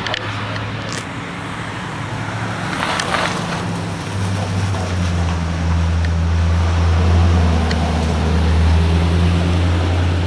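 Low, steady hum of a motor vehicle engine running at the roadside, growing louder about four seconds in and then holding.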